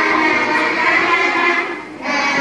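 Recorded background music with held, layered chords, dipping briefly near the end.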